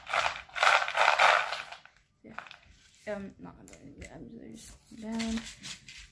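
Small crystal stones being handled and shaken in their packaging, giving a rattling rustle about a second and a half long near the start, then fainter handling sounds.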